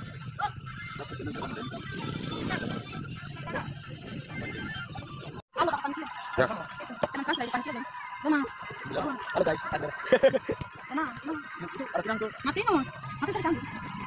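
Scattered voices of people talking and calling out across an open playing field, with faint music underneath; the sound drops out for a moment about five and a half seconds in.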